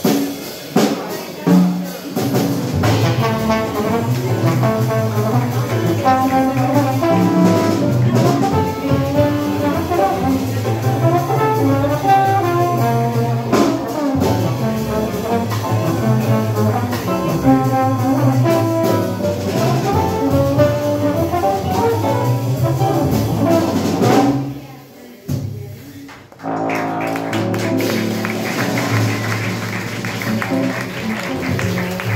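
Live jazz quintet playing, with trombone lead over piano, guitar, upright bass and drum kit. The band drops out for a moment about 25 seconds in, then comes back in more quietly.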